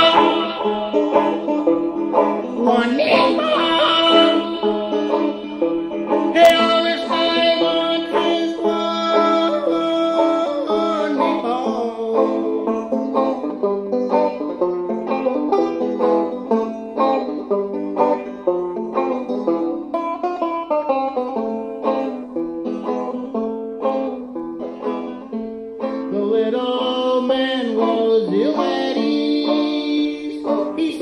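Banjo playing an instrumental break of an old-time folk song, a run of quick plucked notes. Held, sustained tones sound along with it for the first dozen seconds and again near the end.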